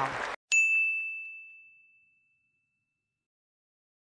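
A single bright ding, a bell-like chime sound effect, sounds about half a second in and fades away over about a second and a half. Just before it, the news audio of a voice and applause cuts off abruptly.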